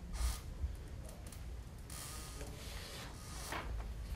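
A few soft rustles of handout paper sheets being handled, over a low steady room hum.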